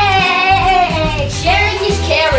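Music with a high singing voice: one long held note, then a new phrase about a second and a half in, over a steady bass line.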